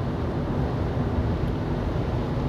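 Steady road and engine rumble of a car cruising on a paved highway, heard from inside the cabin, with tyre and wind noise making an even low drone.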